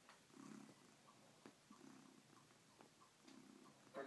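A domestic cat purring softly, the purr swelling and fading in slow cycles about every second and a half, with a few faint clicks as it sucks and mouths a fleece dressing gown.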